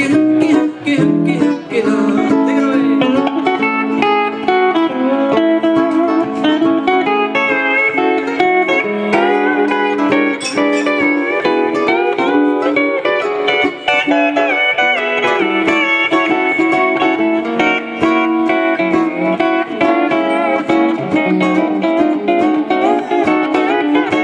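Instrumental break of a Hawaiian tune: pedal steel guitar plays the lead melody with notes that slide between pitches, over steady ukulele strumming.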